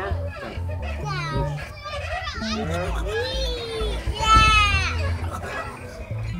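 A toddler girl's high-pitched squeals and wordless vocalizing, gliding up and down in pitch, while she rides a swing. The longest and loudest squeal comes about four seconds in.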